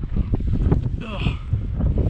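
Wind buffeting the helmet camera's microphone: a loud, uneven low rumble with knocks and bumps as the dirt bike is wrestled out of tall grass. A brief strained vocal sound comes about a second in.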